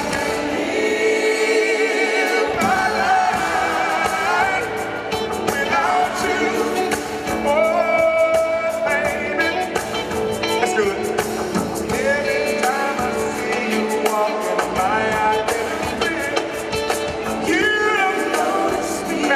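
Live R&B band playing, with a singer's voice carried over the music.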